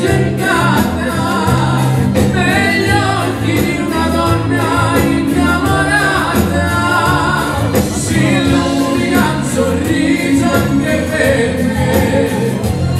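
A live Italian dance orchestra playing a song, with several singers singing together over drums, bass and horns.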